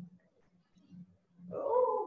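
A pause in a woman's speech: mostly quiet, with a faint low knock at the start and another about a second in, then her voice starts again about a second and a half in.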